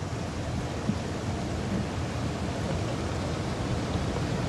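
Steady outdoor background noise on a golf course microphone, a low even rush like wind.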